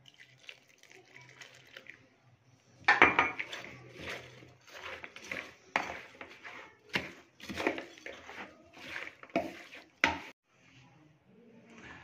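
Water poured faintly into a plastic bowl, then a metal spoon mixing thick gram-flour pakora batter with sliced onion and potato. The spoon scrapes and squelches in repeated strokes, about two a second, starting about three seconds in.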